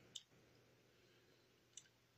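Near silence in a small room, broken by two faint short clicks: one just after the start and one near the end.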